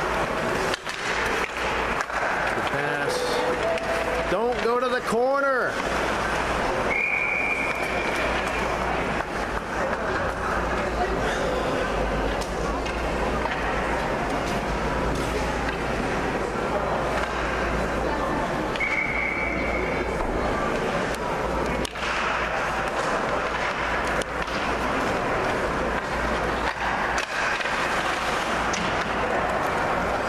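Ice hockey rink ambience: skates scraping on the ice, stick and puck clicks and spectators talking, with a referee's whistle blown twice, about seven seconds in and again around nineteen seconds, each a steady shrill blast of about a second and a half. A short wavering call sounds about five seconds in.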